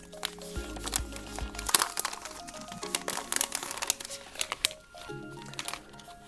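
Background music, with crinkling and short sharp clicks of a thin plastic protective film being peeled off the back of a budget smartphone.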